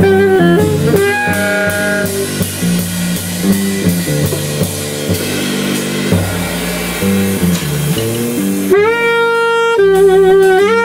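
Live jazz trio: alto saxophone playing over double bass and drum kit. In the middle the sax drops back and the stepping double bass line and drums carry on, then the sax comes back strongly with a long held note near the end.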